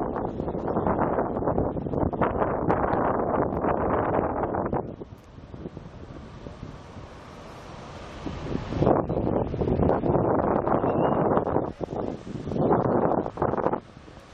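Wind buffeting the camera microphone in strong gusts. It drops to a lighter hiss for a few seconds about five seconds in, then gusts again.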